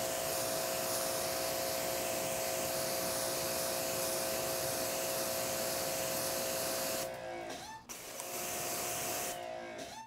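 Greenworks GPW2000-1 electric pressure washer spraying a jet of water onto a painted car hood: a steady hiss of spray over the steady hum of the pump motor. The spray and hum cut out about seven seconds in and again just before the end, the motor's hum rising back up each time it restarts.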